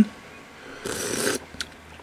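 A short slurp of hot soup broth from a spoon, lasting about half a second, followed by a couple of light clicks.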